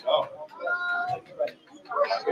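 Voices of people in a room, with one drawn-out high-pitched voice held for about half a second near the middle, like a child's call.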